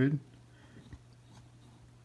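A Sencore CRT tester humming steadily and low while switched on, with one faint click about a second in from its rotary function selector being handled.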